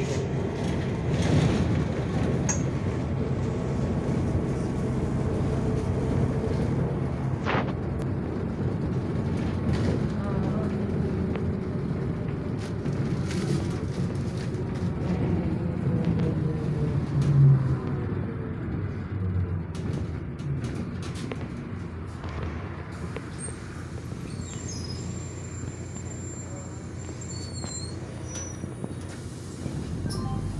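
City bus cabin noise while driving: engine and tyre rumble with the engine pitch rising and falling as the bus changes speed, and one brief louder knock or jolt a little past halfway.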